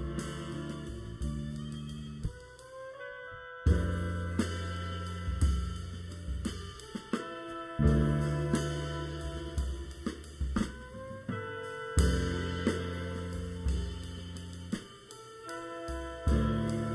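A live jazz ensemble playing: drum kit with cymbals and hi-hat, electric bass and guitar under trumpets and trombone. Big accented hits come about every four seconds.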